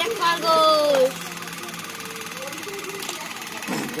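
A person's voice in the first second, one drawn-out falling vowel, then a steady background hum for a couple of seconds, with talking starting again near the end.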